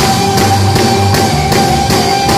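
A live rock band playing: a drum kit keeps a steady beat under electric guitars and keyboards, with one long held note sustained over the top.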